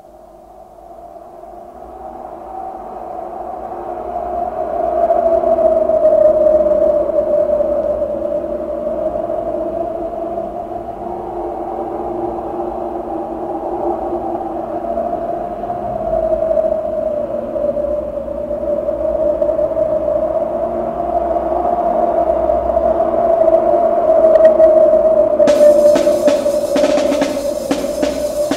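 Droning ambient intro to a death/thrash metal demo track: a sustained, slowly wavering tone with lower layers beneath it fades in over the first several seconds and holds. The drum kit comes in near the end.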